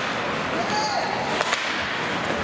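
Ice hockey play: skates scraping on the ice under a steady rink din, with a single sharp crack of a stick on the puck about a second and a half in. A brief shout is heard just before it.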